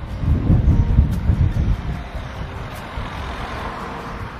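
A motor vehicle driving past along the street: a loud low rumble that comes in suddenly, is strongest in the first two seconds, then eases into steadier road noise.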